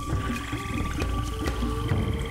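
Production-company logo sting: atmospheric music with a deep rumble, a held high tone and a lower wavering tone, punctuated by a sharp click about once a second.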